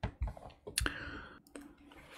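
A few soft, separate clicks, about four in two seconds, over a quiet room.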